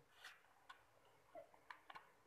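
Near silence, with a few faint, short clicks scattered through it.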